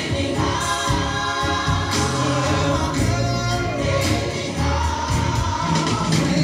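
Gospel song: voices singing together in choir style over instrumental backing with a steady bass line.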